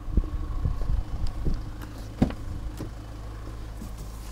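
Knocks and rustles of someone climbing into a car's driver's seat, over a steady low hum. The sharpest knock comes about two seconds in.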